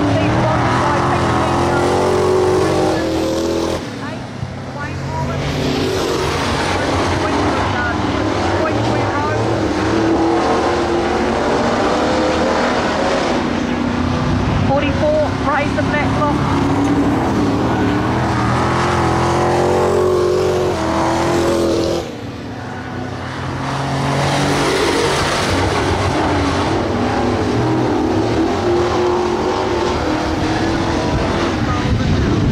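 Speedway saloon race cars lapping a dirt oval, their engines running loud and revving up and down as they go through the turns and pass by, with two short dips in level.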